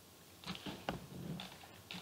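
Faint scattered clicks and a soft low noise at low level, with no speech.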